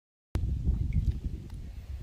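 Low, fluctuating rumble of wind buffeting and handling noise on a handheld phone's microphone, starting suddenly about a third of a second in after dead silence, with a few faint clicks.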